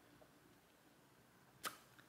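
Near silence: faint room tone, broken once near the end by a short, sharp mouth noise from a woman about to speak.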